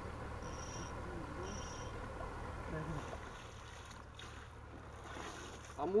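Steady low wind rumble on the microphone beside the pond, with two brief faint high chirps about half a second and a second and a half in.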